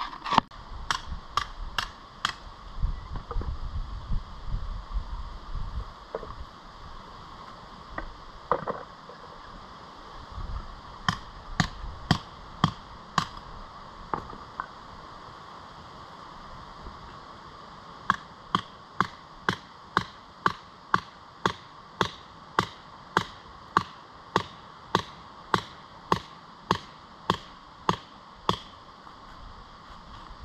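Hand hammer striking rock, breaking out mineralised quartz from a seam: a few scattered blows at first, then a steady run of about two sharp blows a second over the last ten seconds or so.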